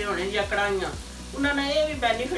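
Minced meat (keema) sizzling as it fries on a tawa, with a woman's voice talking over it.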